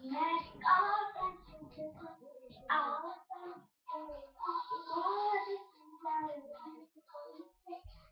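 A young girl singing alone, with a longer held note about four to five and a half seconds in.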